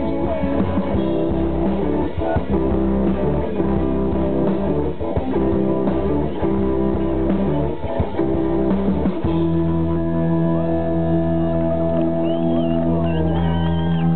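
Live rock band playing an instrumental passage on electric guitars, bass and drums; about nine seconds in it settles into one long held chord.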